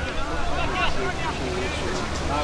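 Indistinct voices talking over a steady low rumble.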